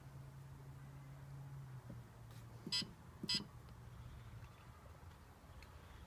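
Two short, faint electronic beeps about half a second apart from a Bartlett 3K kiln controller while its button is held down, over a low steady hum.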